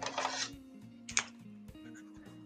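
Soft background music with a steady melody. A brief scratchy rustle comes at the start and a single sharp click a little over a second in, from hands handling markers and paper.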